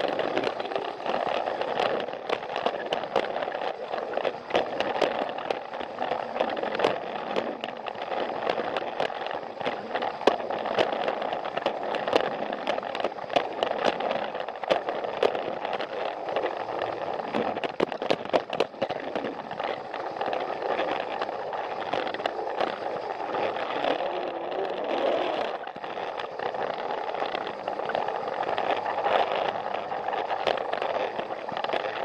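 Battery-powered Plarail toy train (a Thomas the Tank Engine model) running along plastic track: a steady motor-and-gear whir with frequent clicks and rattles from the wheels on the track.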